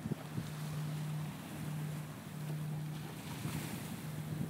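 Wind buffeting the microphone outdoors, over a steady low hum that cuts out and returns every second or so.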